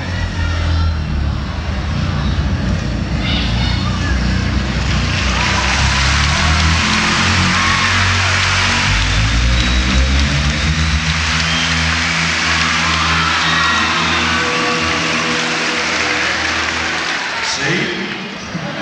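Live concert audio: a band holds sustained chords while a large arena crowd cheers and screams, the cheering swelling through the middle and easing off near the end.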